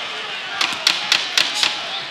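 Timekeeper's ten-second warning, five sharp knocks about four a second, over steady arena crowd noise.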